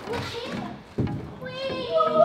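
Children's voices and play noise in a large indoor play hall, with a sharp knock about a second in and a held pitched tone starting near the end.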